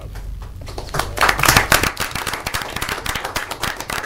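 A small group of people applauding with their hands, starting about a second in and loudest soon after, with a laugh as the clapping begins.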